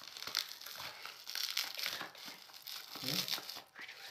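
Thin plastic packaging crinkling and crackling irregularly as it is handled and unwrapped by hand.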